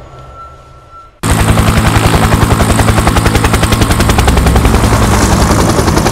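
Helicopter rotor sound effect: a loud, rapid, even chopping of the blades that starts abruptly about a second in, over a steady low drone.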